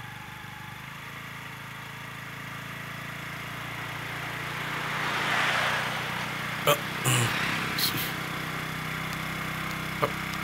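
A small motor scooter engine running steadily, getting louder as it approaches and loudest about halfway through. A few sharp clicks or knocks come in a cluster a little past the middle.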